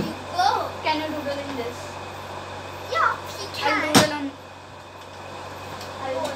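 Girls' short vocal sounds and exclamations without clear words, with a sharp knock about four seconds in, over a steady low hum.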